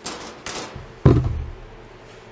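Short rustles as the sampling hose is stowed, then one heavy thump about a second in as the plastic lid of the Snap-on refrigerant identifier's case is shut.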